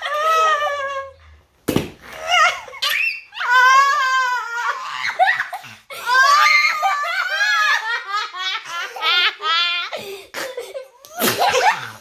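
A woman and a young child laughing hard, in long high-pitched peals broken by quick repeated bursts. There is a brief sharp knock about two seconds in and another near the end.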